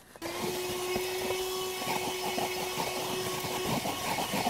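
MECO cordless handheld vacuum switching on about a quarter second in and running with a steady whine over a rush of air. Frequent small crackles are heard as it picks up crud from the car carpet.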